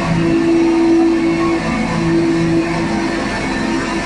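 Live band playing loud, noisy music: a held low drone note and its octave above, breaking off briefly about halfway, over a dense wash of distorted guitar and synth noise.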